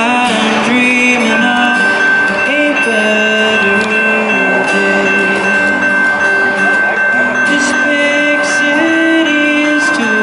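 Amplified live acoustic folk music: an instrumental passage between sung lines, with sustained notes shifting in the low-middle range and one steady high tone held through most of it.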